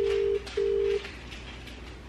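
Phone ringback tone heard through a mobile phone's speaker: one double ring, two short steady low beeps about a fifth of a second apart, the Australian ringing cadence of an outgoing call waiting to be answered.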